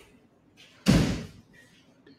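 A door slamming shut once, just under a second in, with a short fading ring-out.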